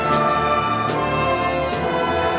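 Symphony orchestra playing live: sustained chords from the full ensemble, with a short struck accent three times at even spacing, a little under a second apart.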